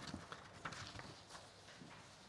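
Faint rustling and a few light taps of paper sheets being handled at a desk.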